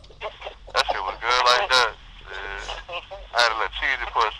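People's voices, laughing and talking indistinctly.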